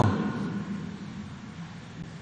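A pause in speech with room tone in a large hall. The echo of the last word dies away over about a second, leaving a faint, steady background hiss.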